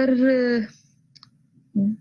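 A woman speaking in a lecture, her phrase trailing off, then a short pause holding a couple of faint clicks before she speaks again near the end.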